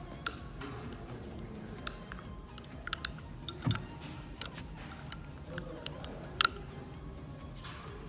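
Metal fittings of an aircraft seat harness clicking and clinking as the straps are handled and fitted into its round quick-release buckle: a string of scattered sharp clicks, the loudest one late on.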